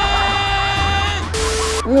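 Film soundtrack: a man's long, drawn-out shout held on one pitch over music, cutting off just over a second in. A brief burst of hiss follows.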